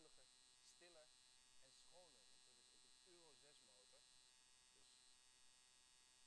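Near silence: a faint voice speaking in a few short snatches over a steady electrical hum with thin high-pitched tones.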